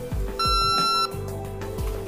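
Exposure beep from a portable X-ray unit: one steady, high electronic beep lasting about two-thirds of a second, signalling that the X-ray is being taken. It sounds over soft background music.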